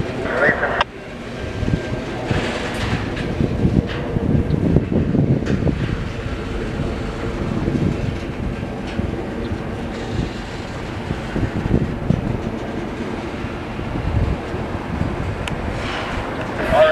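Double-stack intermodal freight train rolling past: a steady rumble with irregular clatter of steel wheels and cars on the rails.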